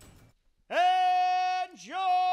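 A man's voice drawing out "Your…" in a long, steady held call, ring-announcer style, after a short near-silence; the held tone dips briefly and is taken up again as he goes into "winner".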